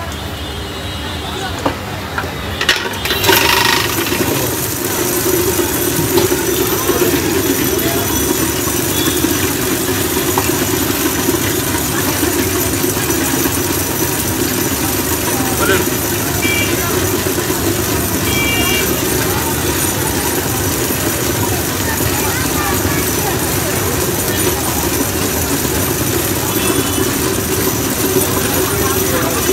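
Electric lassi churner starting up about three seconds in, then running steadily as its rod spins in a pot of curd: a constant motor hum under a wash of noise.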